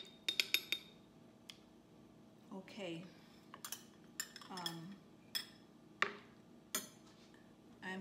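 A metal spoon clinking against a glass pitcher as a juice drink is stirred, a quick run of ringing clinks just after the start. This is followed by scattered single knocks and clinks of utensils and cans being handled on a countertop.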